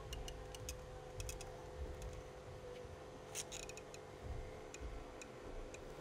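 Faint, irregular clicks of a caulking gun's trigger and plunger rod as construction adhesive is squeezed into a wooden stair-nosing slot.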